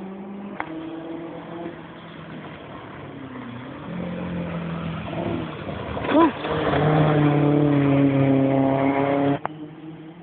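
A historic rally car's engine coming on hard along a forest stage, its note building from about four seconds in and loudest over the last few seconds before cutting off abruptly.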